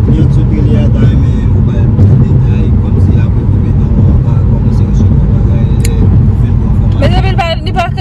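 Loud, steady low rumble of road and wind noise inside a car cabin while driving at highway speed. A voice comes in near the end.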